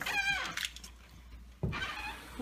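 Interior door being pushed open, its hinge giving a high, wavering squeak; about a second and a half in there is a knock, followed by another short squeak.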